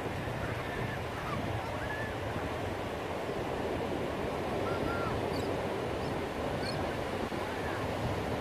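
Steady wash of ocean surf breaking on a sandy beach, with a few faint, short distant calls from people in the water.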